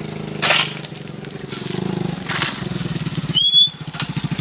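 A spade scraping and scooping into gravelly soil twice, about half a second in and again past two seconds, over a small motorcycle engine idling with an even pulse. Near the end there is a brief high chirp.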